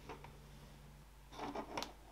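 Faint handling sounds of a webbing strap being threaded back through a slider: light rubbing and small clicks of the strap and hardware, with a short cluster of scratchy rubs and clicks a little past halfway.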